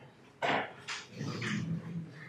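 A man's short, sharp breath about half a second in, then a low, wordless vocal murmur, like a hesitation sound before he speaks again.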